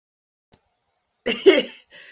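Silence, then about a second in one short cough from a person.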